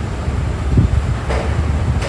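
A steady low rumble over oil frying in a cast-iron kadai with mustard seeds in it. A short burst of sizzle comes a little past halfway, as urad dal is added to the hot oil.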